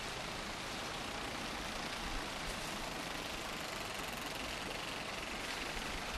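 Steady rushing of flowing stream water at a row of bamboo water wheels, an even noise with no distinct splashes or knocks.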